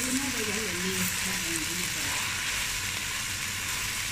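Cut okra frying in oil in a pan, giving a steady sizzle while a spatula turns it.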